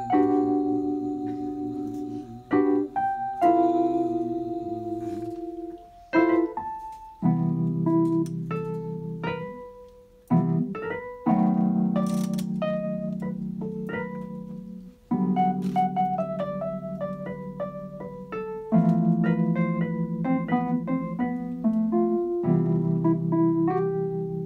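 Electronic stage keyboard played with a piano sound: an instrumental passage of sustained chords, a new chord struck every few seconds, with single notes picked out above them, in a slow R&B-style ballad.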